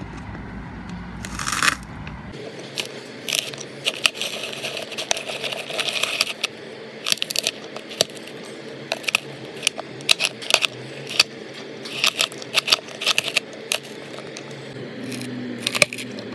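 A spiked-drum grater shredding chunks of coconut and fresh dates. Frequent sharp clicks and clatters as the pieces knock and scrape against the turning teeth and the hopper, over a steady hum.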